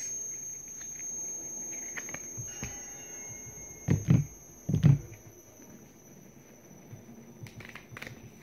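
Two dull thumps about a second apart, midway through, over faint rustling, with a thin steady high whine running throughout.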